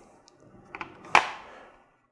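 A soft click, then a sharper click just past a second in that dies away quickly.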